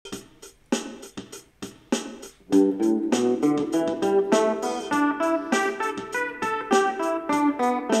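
Electric guitar, a PRS-style solid body, playing a G pentatonic scale run in steady quick notes over a backing beat at 100 bpm. Before the notes come in about two and a half seconds in, only sharp clicks of the beat are heard.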